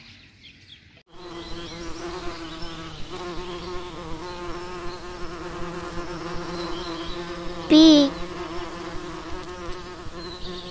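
Bee buzzing steadily, starting about a second in. Near the eight-second mark the buzz briefly grows louder and swoops in pitch.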